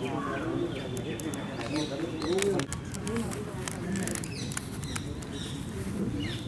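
Indistinct voices talking in the background with birds chirping now and then, and a few sharp clicks.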